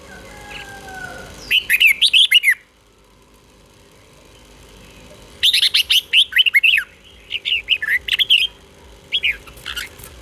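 Red-whiskered bulbul singing in bursts of quick, sharply gliding notes. One short burst comes about a second and a half in, then after a pause a longer run of phrases from about halfway through to near the end.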